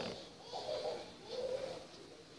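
A dove cooing faintly, a run of short, soft coos repeating about once a second.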